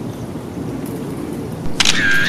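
Steady outdoor background rumble. Near the end comes a sharp click from the Contax 645 medium-format film camera's shutter, then a short steady whir as its built-in motor drive advances the film.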